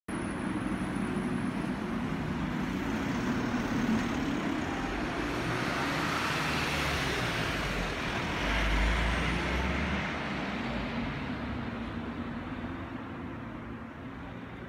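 Road traffic noise: a vehicle passing, swelling to its loudest about eight or nine seconds in, then fading away.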